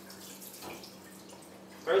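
Rinse water draining out of a plastic colander of soaked rice and trickling into a stainless steel sink, faint and steady.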